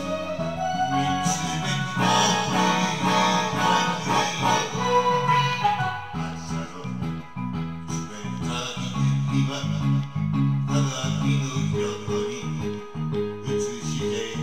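Karaoke backing track of a Japanese pop song, with guitar and a melody line, playing from a television.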